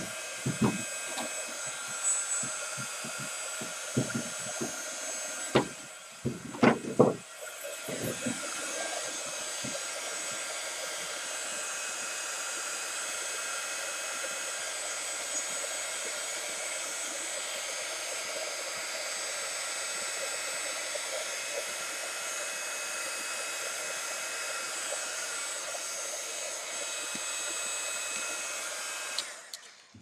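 A heat gun blowing steadily with a loud fan whine. It stops briefly about seven seconds in and starts again, with a few short sharp bursts in the first several seconds.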